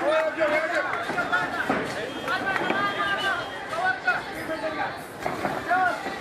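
Several people shouting and calling out over one another at a boxing bout, with no clear words.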